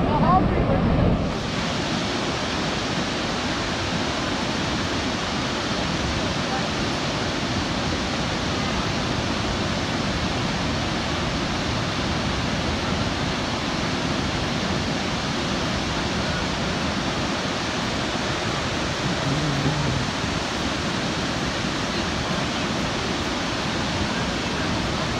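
Steady, unbroken rushing of a large waterfall, Niagara's American Falls. Voices are heard briefly in the first second, before a cut.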